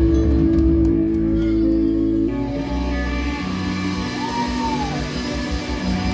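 Live band playing: electric guitar and a Nord Electro 3 stage keyboard hold sustained chords. The chord changes about two seconds in, and a note bends up and back down near the middle, over a low pulsing bass.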